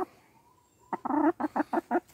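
A hen clucking: quiet at first, then about a second in a run of clucks, one longer note followed by four quick short ones.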